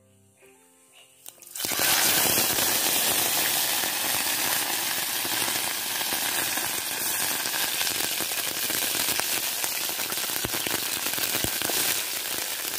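Fish frying in hot oil in a pot over a wood fire: a loud, steady sizzle full of fine crackles that starts suddenly about one and a half seconds in. Soft background music plays before it.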